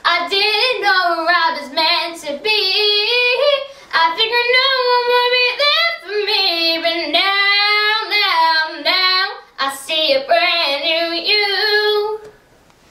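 A ten-year-old girl singing a musical-theatre song solo, in loud phrases with held notes and brief breaks for breath.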